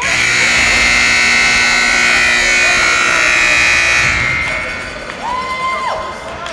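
Ice hockey arena horn sounding loudly and steadily for about four seconds, then fading away.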